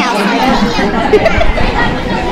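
Chatter of many overlapping voices in a busy restaurant dining room. A woman's voice finishes a word at the start.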